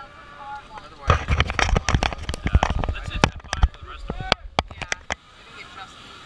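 A dense run of sharp knocks, clatters and crackles close to the microphone, lasting about four seconds from about a second in, with voices mixed in: handling noise from the camera and harness gear.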